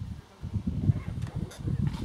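Uneven low rumbling and buffeting on a handheld camera's microphone as it is carried and panned outdoors, with a few faint clicks.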